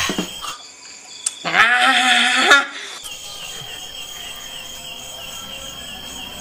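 A single bleat-like animal call with a wavering pitch, about a second long, starting about a second and a half in. Then steady insect chirping with a regular, high repeating chirp.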